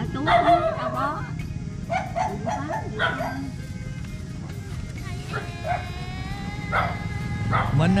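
A dog barking and yelping in short bursts a few times, over background music and low voices.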